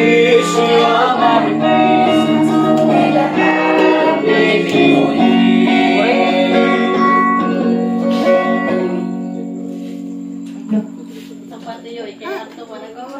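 A group of young voices singing together to a strummed small guitar; the song ends about nine seconds in and the last chord dies away, followed by a single light knock.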